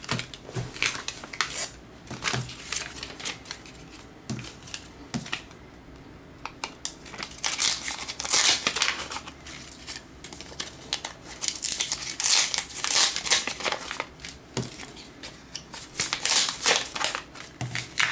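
Paper perfume sample strips being handled and shuffled into a stack by hand: rustling and crinkling in irregular bursts.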